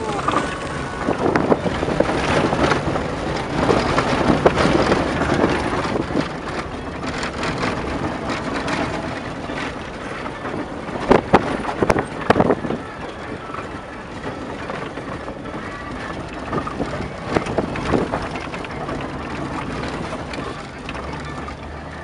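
Vehicle cab noise while driving off-road over rough sandy ground: a steady rumble of engine and tyres, with the body and interior rattling and knocking over bumps. A cluster of sharp knocks comes about halfway through.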